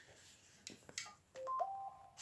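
A few faint clicks, then from about one and a half seconds in a short electronic beep of two steady pitches sounding together, like a phone's keypad tone.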